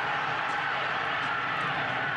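Steady stadium crowd noise on a TV broadcast during an interception return, with a faint voice somewhere in the crowd.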